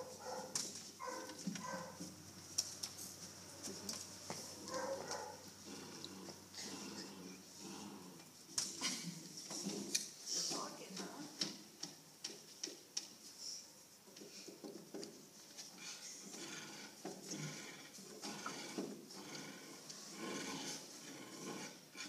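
Puppy searching along a row of wooden scent boxes: scattered light taps and knocks. Quiet voices murmur now and then.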